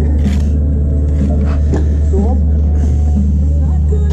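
A steady low mechanical hum runs throughout, under a radio playing music, with brief bits of voice and a few short knocks.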